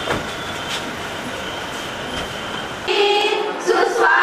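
Steady noisy background with indistinct voices, then, about three seconds in, an abrupt change to women's voices over a microphone.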